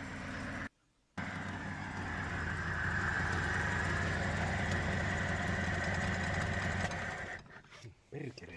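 Lada 2105 four-cylinder carburettor engine running steadily, broken by a brief silent gap about a second in and fading near the end. Its carburettor's primary throttle plate will not open, which the owner suspects is seized by oxidation.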